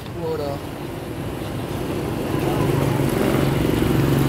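A motor vehicle's engine running steadily, growing louder through the second half.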